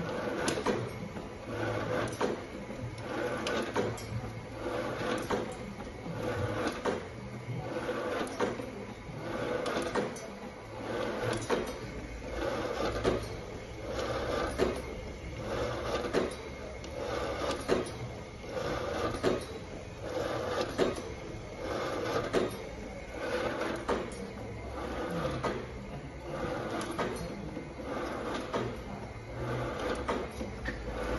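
Bizerba A 404 FB automatic slicer running empty: its drive hums under a steady, regular cyclic clatter of the slicing and conveyor mechanism, with light clicks on each cycle.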